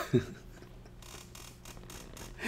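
A man's short laugh right at the start, falling in pitch, then quiet room tone: a low steady hum with a few faint ticks.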